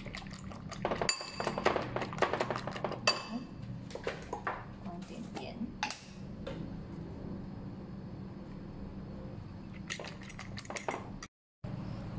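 A metal fork beats eggs with blanched long beans in a ceramic bowl, making rapid clinks against the bowl. The clinks thin out after about three seconds, and a few more come near the end.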